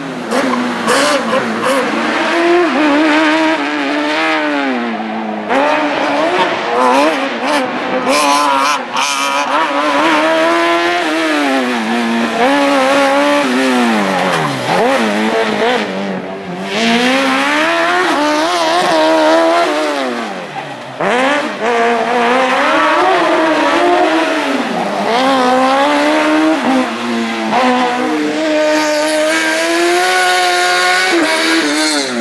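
Racing car engine revving hard through a cone slalom, its pitch climbing and dropping back over and over as the car accelerates and slows between the cones, with two deeper drops in the second half.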